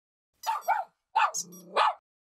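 A dog barking in short bursts: two quick barks about half a second in, then a longer run of barks in the second half.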